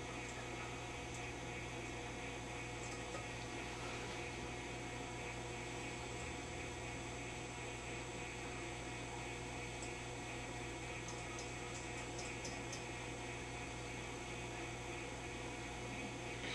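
Steady mains hum with many overtones from the running Admiral 24C16 valve television. Its picture works but its sound section is still dead, so no program audio is heard. A few faint ticks come about three-quarters of the way through.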